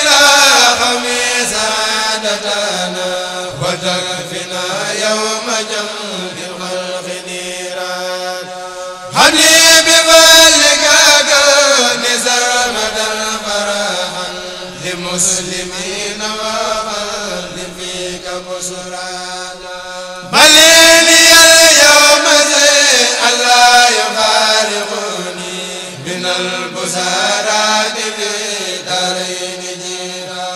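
A kourel, a group of men, chanting a Mouride Arabic religious poem (khassida) with long held, slowly bending melismatic lines. A new phrase comes in loudly about nine seconds in and again about twenty seconds in, each tapering off gradually.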